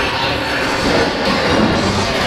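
Loud ride soundtrack music over a steady low rumble, heard from inside a moving dark-ride vehicle.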